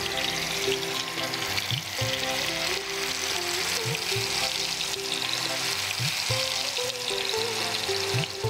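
Spice-coated fish pieces frying in hot oil in a pan: a steady sizzle as a wooden spatula moves them about, under background music with a slow melody and regular low bass notes.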